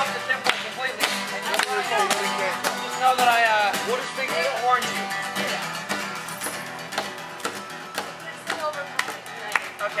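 Acoustic guitar being strummed, with people's voices over it and sharp taps throughout; the voices thin out after about five seconds.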